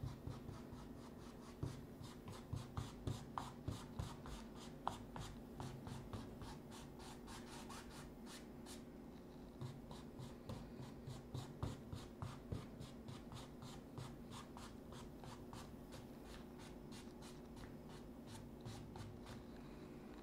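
A paintbrush stroking back and forth across a canvas, brushing acrylic paint into the sky, in quick scrubbing strokes of about three a second. The strokes come in two runs, the first about two seconds in and the second around ten seconds in, and fade out after about thirteen seconds.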